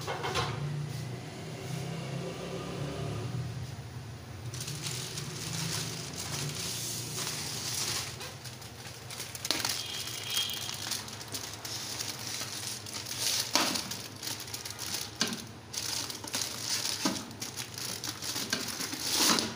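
Aluminium foil crinkling and rustling as it is handled and folded, with many short sharp crackles, starting about four seconds in.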